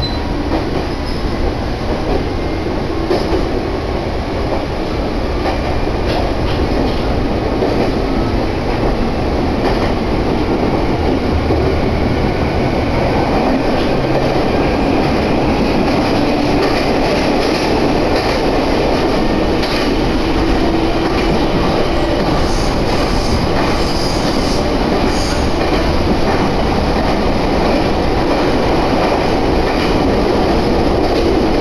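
Meitetsu Gamagori Line electric train running between stations, heard from aboard: a steady rumble of wheels on the rails. It grows a little louder over the first few seconds, with a faint rising whine.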